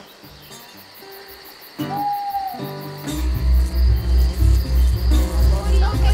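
Crickets chirping over soft background music, with one held high note about two seconds in. About three seconds in, a loud, deep pulsing beat starts, about three pulses a second.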